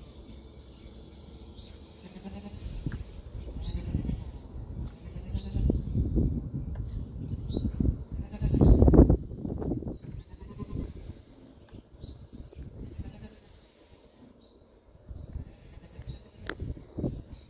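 A ewe in labour, giving a series of short, low bleats and groans, the loudest about nine seconds in.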